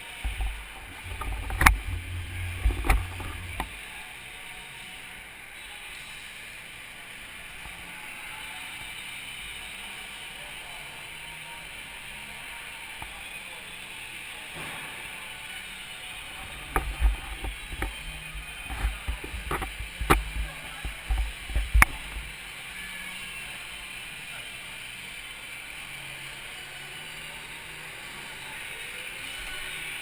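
Onboard sound of an indoor go-kart on track: a steady run of motor and tyre noise. Sharp knocks and low rumbling jolts come in the first few seconds and again from about 17 to 22 seconds in.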